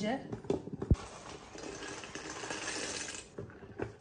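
A wooden spatula stirring pasta in water inside a stainless-steel electric kettle, knocking against the metal side a few times, loudest about a second in, with a steady hiss for about two seconds in the middle.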